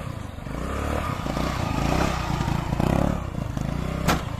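Small single-cylinder engine of a gearless automatic scooter running under throttle while held in a wheelie, its note wavering and rising and falling with the throttle.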